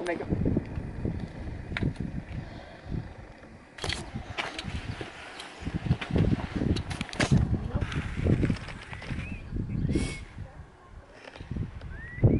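Gusty wind rumbling on the camera microphone in uneven surges, with a few sharp knocks about 4, 7 and 10 seconds in.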